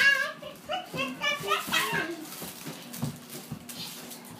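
Young children's high-pitched voices, wordless shouts and squeals of children at play, loudest in the first two seconds, then a few soft knocks near the end.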